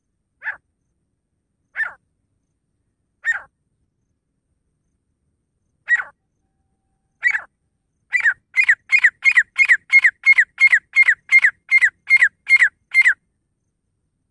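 Grey francolin calling: five short, sharp, spaced single notes, then about eight seconds in a fast, even run of about seventeen notes at roughly three a second.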